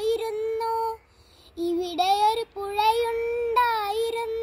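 A young boy singing Malayalam verse (padyam) solo and unaccompanied, holding long steady notes, with a short breath pause about a second in.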